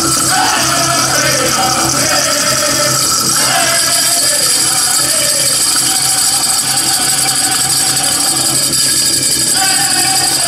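A powwow drum group singing a men's chicken dance song in gliding, high-pitched voices over a steady beat on the big drum, with the high jingling of the dancers' bells throughout.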